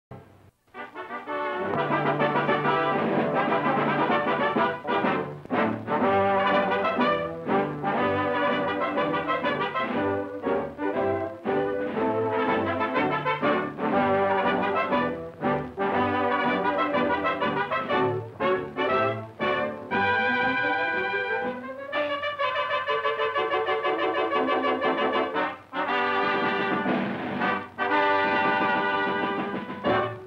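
Title music of a 1936 cartoon soundtrack: a brass-led orchestra plays a tune, starting about a second in, with a rising slide about two-thirds of the way through.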